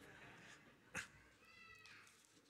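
Near silence: room tone with a soft click about a second in, then a brief high-pitched squeak.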